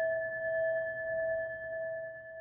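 A meditation bell rings on after being struck, holding a lower and a higher tone that slowly fade, the bell that closes the meditation session.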